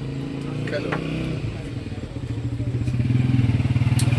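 A motor vehicle engine, likely a motorcycle, running with a low pulsing hum that grows louder over the second half.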